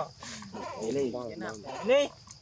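Macaque calls: a run of short arching cries, then a louder rising cry near the end.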